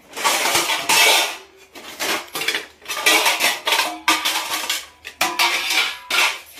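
Stainless steel plates and utensils clattering and clinking against one another as they are handled: a quick run of repeated metallic clanks, each with a short ring.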